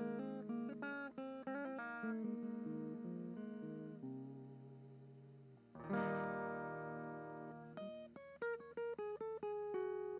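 Background guitar music: single plucked notes in a quick run, with a louder chord struck about six seconds in that rings on before the picking starts again.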